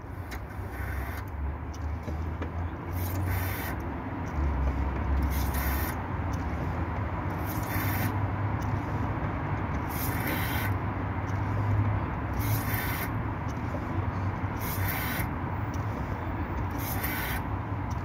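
Car engine idling in the engine bay with a steady low rumble, and a short hiss repeating about every two seconds.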